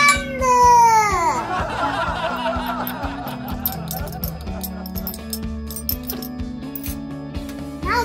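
Background music with a steady tune, opened by a pitched sound that slides down steeply over about a second.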